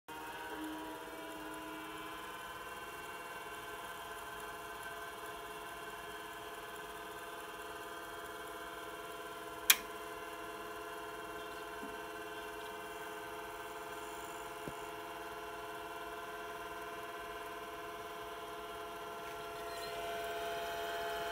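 Apple Lisa 2/10 computer running during its power-on self-test: a steady whirring hum of several tones from its running machinery, settling in pitch in the first second or two. One sharp click about ten seconds in.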